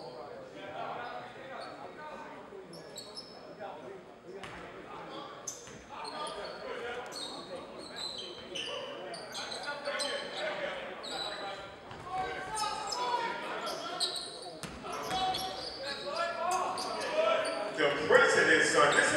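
Basketball bouncing on a hardwood gym floor in live play, among voices of players and spectators and short high squeaks, all echoing in a large hall; the noise builds toward the end.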